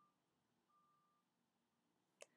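Near silence: a faint electronic noise floor with no audible sound event.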